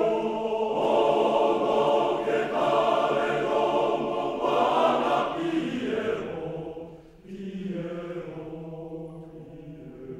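Male voice choir singing a cappella in Japanese: loud full chords for the first six seconds, a short break about seven seconds in, then a softer phrase that fades away.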